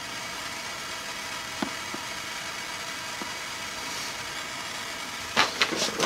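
Propane torch burning with a steady hiss, with a couple of faint ticks about a second and a half in.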